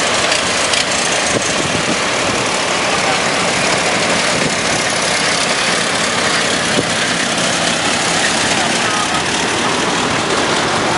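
Engines of vintage cars running at low speed as they roll past one after another, with voices in the background.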